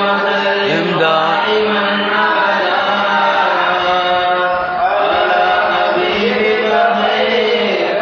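Men's voices chanting Arabic Mawlid verses in praise of the Prophet, holding long, slowly bending melodic notes without a break.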